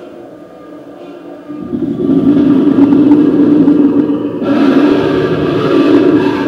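Animatronic dinosaur's recorded roar played through its loudspeaker: a long, low, rumbling growl that starts about a second and a half in and grows brighter near the end.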